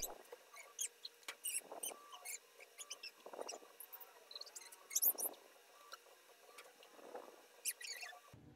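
Faint handling noise of a printed circuit board and a small electronic component in the fingers: light ticks and clicks, with a soft rustle about every two seconds.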